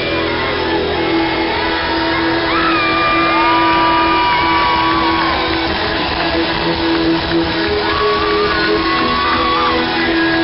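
Live rock band playing at stadium volume, with long held notes that bend in pitch over the full band, and the crowd shouting along. Heard from amid the audience on a low-quality recording with the top end cut off.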